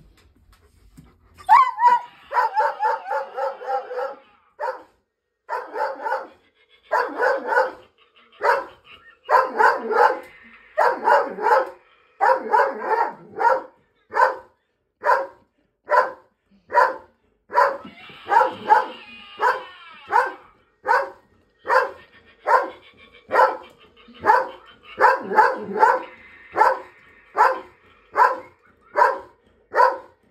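A Doberman barking over and over, starting about a second and a half in. The barks come in quick clusters at first, then settle into single barks about once a second. It is alarm barking at a scarecrow figure the dog is wary of.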